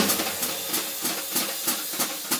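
Jazz brushes on a snare drum in a fast swing: one accent right at the start, then a steady swishing hiss with light taps.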